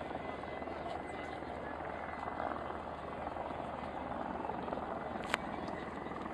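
Steady drone of aircraft engine noise over an air-show crowd's chatter, with a single sharp click about five seconds in.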